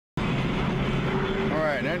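Steady road and engine hum of a car heard from inside the cabin while driving, cutting in abruptly just after the start; a voice begins speaking near the end.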